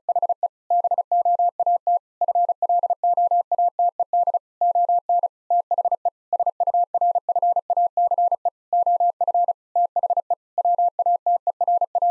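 Morse code sent at 35 words per minute: one steady mid-pitched tone keyed on and off in rapid dots and dashes, with slightly longer gaps between words. It spells out the practice sentence 'The boat floated on the surface of the water.'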